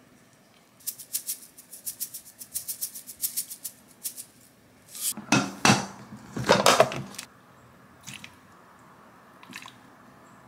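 A seasoning shaker shaken rapidly over a plate, a quick run of rattling shakes lasting about three seconds. About five seconds in, a ladle scoops water kimchi from a plastic container twice, sloshing, with a couple of light clinks near the end.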